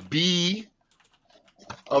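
A man's speech, broken by a pause of about a second that holds only a few faint light clicks.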